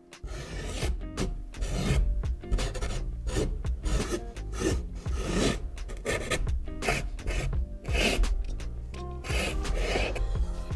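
A paint marker's nib scratching across canvas in short, irregular strokes as letters are outlined, over background music.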